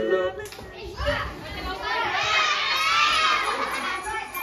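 A group of schoolchildren talking and shouting at once, many high voices overlapping, getting louder and busier in the second half.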